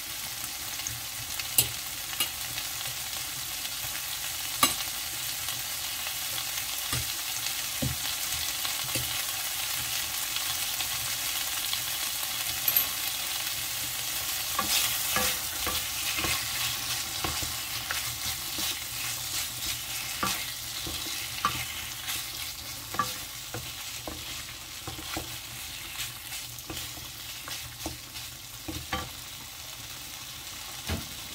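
Pork and curry paste sizzling in a nonstick frying pan while a wooden spatula stirs and scrapes through it, with a few sharp knocks of the spatula against the pan in the first five seconds.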